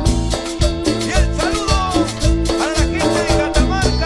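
Live cumbia band playing an instrumental passage: drum kit, electric guitar and keyboard over a steady dance beat, with a lead melody that slides up and down in pitch.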